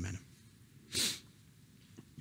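One short, sharp sniff, a quick breath in through the nose, about a second in.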